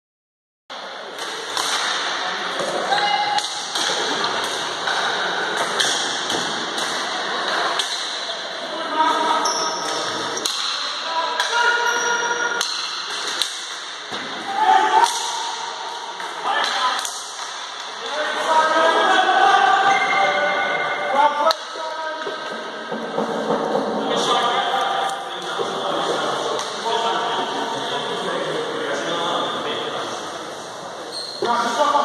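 Ball hockey game in an echoing sports hall: players calling and shouting over one another, with frequent sharp knocks of sticks and the ball on the hard floor. The sound cuts in just under a second in, after a moment of silence.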